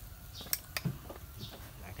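Metal tongs clicking twice in quick succession, about half a second in, while raw meat is being moved onto a wire grill over charcoal.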